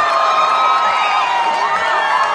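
A large crowd of football fans cheering and shouting loudly, with many voices held in long, drawn-out calls over one another.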